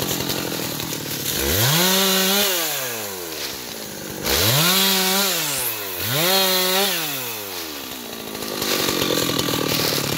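Two-stroke Husqvarna chainsaw revved up three times from a low idle, each time climbing quickly to a high steady whine, holding for a second or so, then dropping back to idle.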